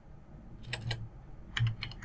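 Computer keyboard being typed on: a handful of separate key clicks in two short runs, the second near the end.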